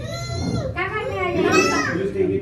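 A small child squealing twice in a high-pitched voice, the second squeal longer and rising before it falls away, while being carried and swung about in an adult's arms.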